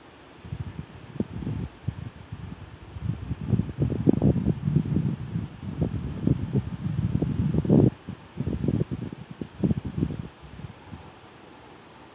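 Wind buffeting the microphone in irregular gusts: low rumbles that come and go from about half a second in, loudest around four and eight seconds, dying away near the end.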